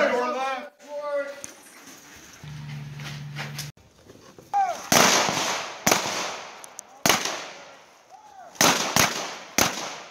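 A string of about six gunshots, sharp cracks spaced irregularly over the second half, each fading quickly.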